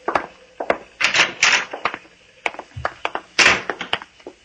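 Radio-drama sound effects of leaving on foot: a door and footsteps. They come as a string of short knocks and clicks, about three or four a second, with two longer rushing bursts, one about a second in and one about three and a half seconds in.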